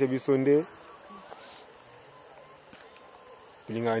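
Steady high-pitched chirring of insects, heard under a man's voice briefly at the start and again near the end.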